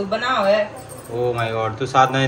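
Voices talking, with a light metallic jingle or clink mixed in.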